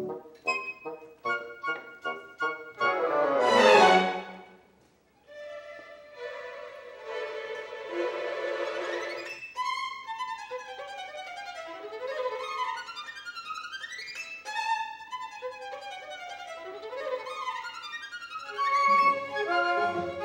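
Classical music: plucked harp notes and a sweeping downward harp glissando, then a brief pause and held notes. A solo violin then plays fast running scales up and down, and the orchestra comes back in near the end.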